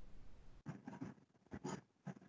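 Faint scratchy writing strokes, several short ones in quick succession in the second half, after a low rumble near the start.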